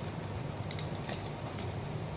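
Steady background noise of a crowded room, with a few faint clicks about halfway through.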